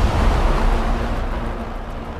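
Reverberant low rumble and noisy wash of a cinematic impact sound effect dying away slowly, the tail of a dramatic music sting.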